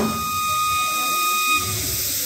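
Kagura bamboo flute holding one long high note after the drumbeats stop, over a steady hiss; the note fades out near the end.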